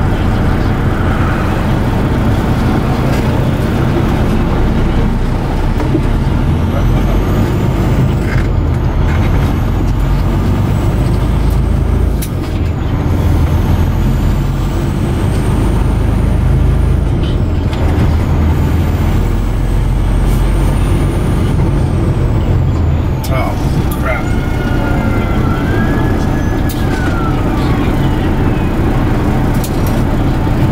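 Semi-truck engine and road noise heard from inside the cab while driving: a steady, loud low rumble. A faint high whine rises and falls through the middle, and a short gliding tone sounds near the end.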